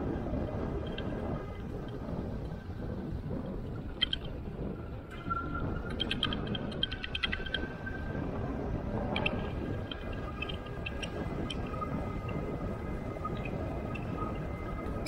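Steady low rumble of wind and tyres from an e-bike rolling along a paved trail, with short high chirps scattered through and a quick run of them about halfway.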